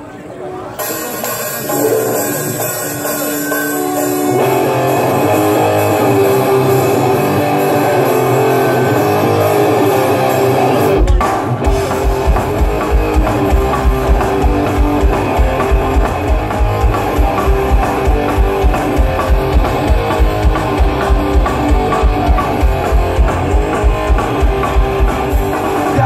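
Live punk rock band playing a song's instrumental opening: electric guitar alone at first, the sound filling out about four seconds in, and the drum kit coming in about eleven seconds in with a fast, steady beat under guitar and bass.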